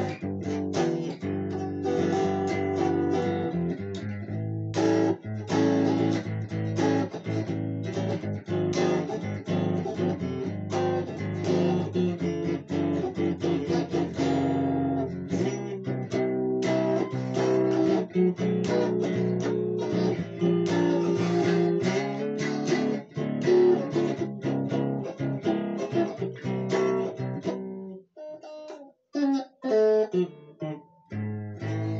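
Stratocaster-style electric guitar played in a run of chords, with chord changes about every second. Toward the end it thins out to a few separate notes.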